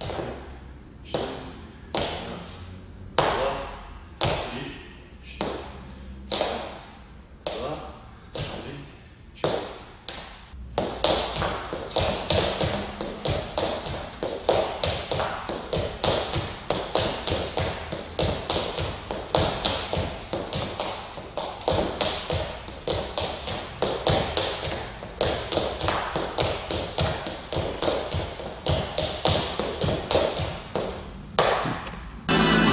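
Leather dress shoes tapping and stepping on a wooden floor in lezginka dance footwork. The taps come singly, about one or two a second, for the first ten seconds or so, then turn quicker, louder and closer together.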